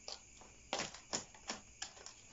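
Metal spoon pressing and tapping moist potting soil down into a plastic pot to compact it: a handful of short, scattered scrapes and taps.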